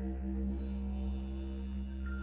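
Choral music: a steady, chant-like drone of sustained held notes over a deep low hum, with almost no change in pitch.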